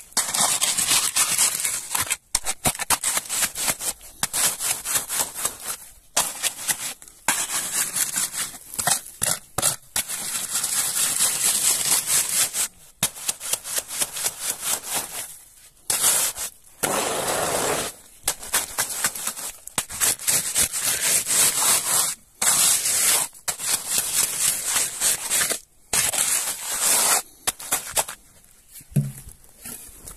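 A hand float scraping over freshly laid gravel concrete in quick, repeated strokes, in runs broken by short pauses. This is the concrete being smoothed flat.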